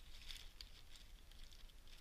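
Faint rustling of a clear plastic packet being opened by hand, a few soft scattered crinkles.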